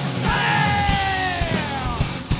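Live heavy rock band playing, with one long yelled vocal note that comes in about a quarter second in and slides steadily down in pitch, over drums, bass and electric guitar.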